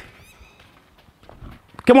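Quiet, light taps of a football being dribbled with small quick touches on artificial turf.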